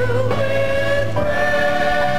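Gospel church choir singing a praise song, holding long notes over a steady low accompaniment; about a second in the voices move together to a new chord and hold it.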